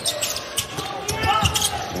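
Basketball dribbled on a hardwood court during live play, heard as a run of sharp bounces, with arena crowd noise underneath.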